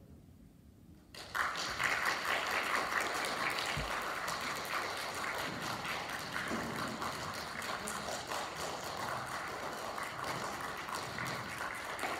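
The band's last note dies away, then audience applause breaks out suddenly about a second in and keeps going.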